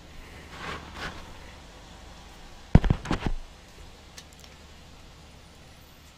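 A quick cluster of four or five sharp knocks about three seconds in, over a faint steady low hum in a moving truck cab.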